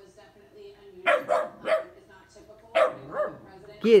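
Goldendoodle puppy barking: three quick barks about a second in, then another bark near the end, wary barks at an unfamiliar new ball.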